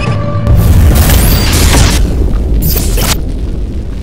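Cinematic logo-sting sound effects over music: a sudden, loud, deep boom about half a second in, followed by a lasting low rumble. A high hissing sweep above it cuts off sharply near the end.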